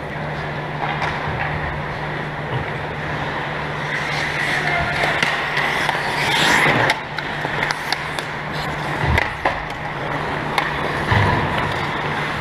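Ice hockey skates carving and scraping across the ice, with one longer, louder scrape that builds and cuts off sharply about seven seconds in, and sharp clicks of sticks and puck, over a steady low hum.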